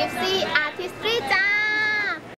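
A high, child-like singing voice runs through a few short gliding notes, then holds one long note that slides down and stops just before the end.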